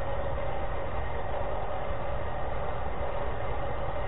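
Steady background noise of a lecture-room recording: an even low rumble and hiss with a faint steady tone, unchanging in level.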